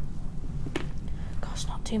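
Soft, half-whispered speech with a few hissy sounds, over a low steady hum.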